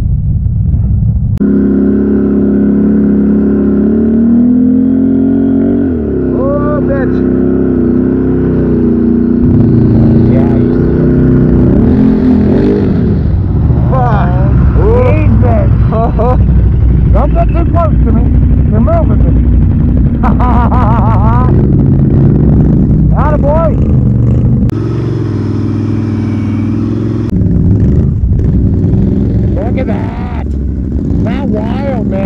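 ATV engines running close by, loud from about a second and a half in, with repeated revs rising and falling as the quads crawl through soft, rutted ground.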